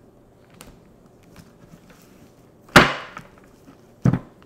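A stack of flash cards knocked down onto a tabletop: one loud, sudden thump near three seconds in, after a few quieter taps and paper rustles as the cards are handled.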